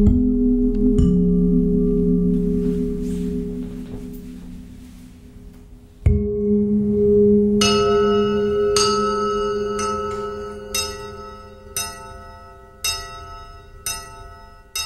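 Music played through a Cerwin-Vega XLS-15 three-way tower speaker and CLSC12S subwoofer. Long, deep sustained tones fade out, a new swell of them comes in about six seconds in, and then bell-like struck notes ring out about once a second over them.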